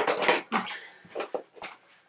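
Makeup products and their packaging being handled and put away: a few short clattering knocks and rustles, the loudest right at the start, then fainter ones.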